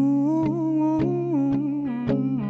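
A singer humming a wordless melody with closed lips, the held note stepping up at the start and easing back down in steps, over an electric guitar's steady low chord and picked notes.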